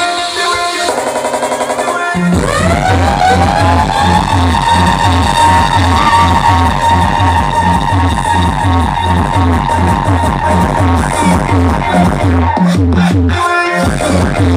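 Loud electronic dance music from a DJ set on a club sound system. A thin, stuttering passage gives way about two seconds in to a rising sweep and a heavy, fast, even kick-drum beat, and the bass drops out briefly near the end.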